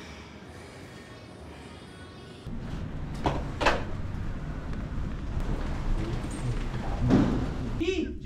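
A quiet steady hum, then a louder rumbling background with faint indistinct voices, and two sharp knocks close together about a second after the change.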